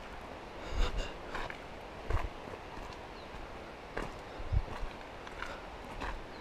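Footsteps of a hiker walking on a dirt trail: uneven soft thuds about one a second, over a faint steady hiss.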